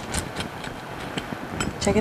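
Rolling pizza cutter wheel slicing through a crisp, thick pan-pizza crust: a string of small crackling clicks as the baked crust crunches under the blade.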